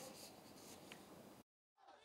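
Near silence: faint room tone that drops out completely for a moment about one and a half seconds in, then faint street sound rises just before the end.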